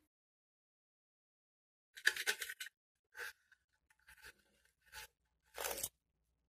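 Paper name slips rustling and sliding inside a wooden-framed glass bank as it is tipped and shaken, in several short scraping bursts starting about two seconds in.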